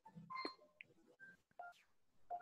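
Near silence on a video-call line, with a few faint, very short blips.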